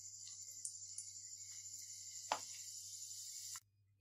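Corn-flour nacho chips frying in hot oil in a kadai on a low flame: a steady, high sizzling hiss with a single sharp click about two seconds in. The sound cuts off suddenly just before the end.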